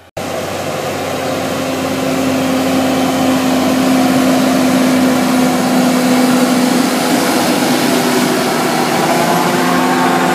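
Fendt tractor engine running under load, pulling a Lemken seed drill combination through tilled soil close by: a steady engine drone with one held tone, mixed with the clatter of the implement. It starts abruptly and grows louder over the first few seconds, then holds.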